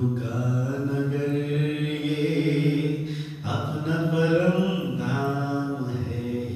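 A man's voice chanting through a microphone in long held notes: one drawn-out phrase of about three seconds, a brief break, then a second held phrase from about three and a half seconds in.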